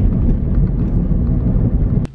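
Steady low road and engine rumble inside the cabin of a moving car, loud.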